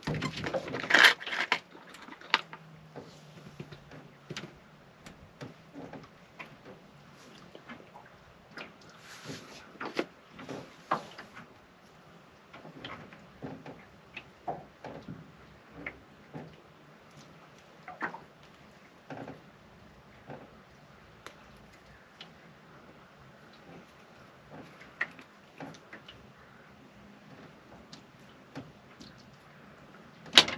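Fishing tackle being handled at a plastic tackle box: a cluster of clicks and rattles in the first couple of seconds as pliers are taken from the tray, then sparse small clicks and taps while a jig is rigged by hand.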